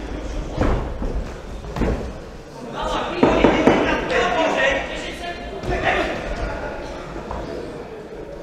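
Coaches and spectators shouting during an amateur boxing bout, with several sharp thuds of boxing gloves landing, the loudest shouting coming about three seconds in.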